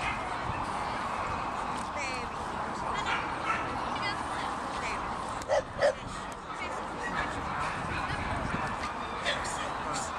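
A dog gives two quick, sharp barks a little over five seconds in, over a steady background murmur of people talking.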